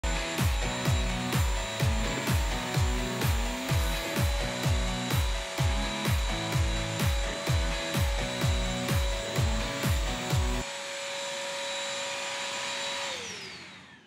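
Background music with a steady beat of about two beats a second, which stops about ten seconds in. Under it runs the steady whine of a BISSELL CrossWave wet/dry vacuum's motor, which winds down in pitch and fades near the end as it is switched off.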